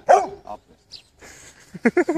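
Pit bull barking: one loud bark right at the start and a shorter, weaker one about half a second later.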